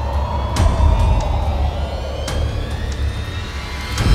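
Suspense background score: a low rumbling drone under slowly rising, siren-like tones, with a couple of sharp hits.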